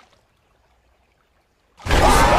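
Near silence, then near the end a sudden loud splash as a hand plunges into a pond.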